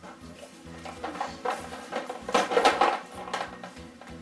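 Plastic glue bottles clinking and rattling against one another and a large glass bowl as a hand rummages through them, in a string of irregular clicks and knocks.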